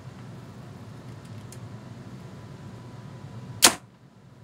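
An Elite compound bow shot once, about three and a half seconds in: a single sharp, loud report as the string is released and the arrow is driven through a paper-tuning sheet. It is a paper-tuning test shot to check arrow flight after a quarter-turn adjustment of the limb pockets.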